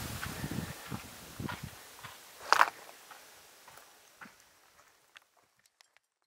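Scattered short knocks and scuffs, one louder and sharper about two and a half seconds in, growing fainter until they die away near the end.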